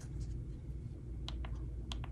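Side buttons of an iPhone 15 Pro Max pressed through a rugged waterproof case's button covers, giving a few short, very clicky clicks. Two come close together past the middle and one near the end.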